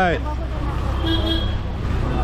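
Busy street traffic noise with a steady low rumble and a short vehicle horn toot about a second in.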